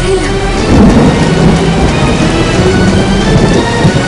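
Film thunderstorm sound effect: a heavy rumble of thunder swelling about a second in, with rushing storm noise, over background music.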